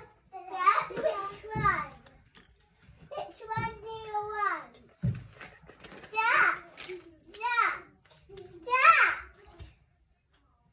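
A young child's high-pitched voice in five or so short phrases with brief pauses between them, the words unclear.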